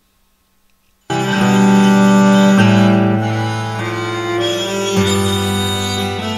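About a second of silence, then acoustic guitar resumes with long sustained, violin-like notes drawn out by an EBow-style string driver, the pitch changing every second or two as the melody is fingered with hammer-ons.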